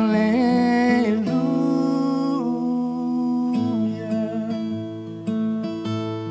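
A man sings a held note with vibrato to his own acoustic guitar; the voice ends within the first couple of seconds and the guitar plays on alone.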